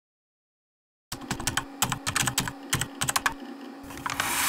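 Typing on a computer keyboard: a run of quick, irregular key clicks starting about a second in, over a steady low hum.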